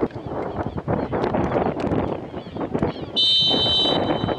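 Referee's whistle blown once for the kickoff, a steady shrill blast of a little under a second near the end, over the steady background noise of the ground.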